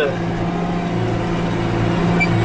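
John Deere 310SE backhoe's four-cylinder diesel engine running at a steady speed, heard from the operator's seat as the machine drives across a field.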